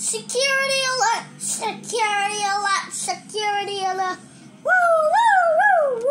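A child's high voice in long, sung wails: several held notes stepping down in pitch, then a wavering cry that rises and falls near the end, play-acting a toy character's cries of pain.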